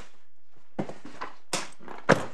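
Paper rustling as pages of a court bundle are turned, in a few short rustles about a second in and again near the end.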